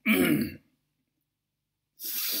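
A man clears his throat once, briefly.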